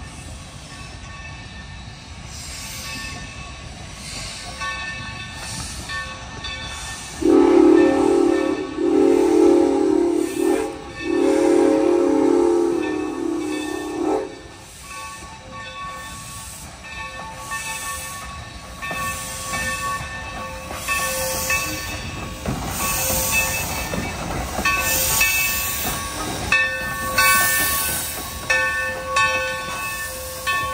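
Steam locomotive No. 3025 sounding its steam whistle in a few blasts over about seven seconds, then its exhaust chuffs and steam hiss at a regular, quickening beat, louder as it draws near and passes.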